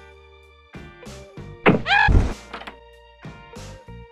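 Background music with drums and sustained instrument notes. About one and a half seconds in, a loud, short sound effect with a bending pitch over a low thud stands out above the music for under a second.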